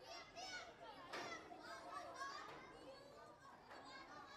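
Faint, overlapping voices of many children talking and calling out together, several high calls rising and falling in pitch.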